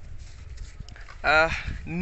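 Low rumble of a handheld phone microphone being jostled and rubbed while a man climbs a mango tree, with one short voice-like call about halfway through.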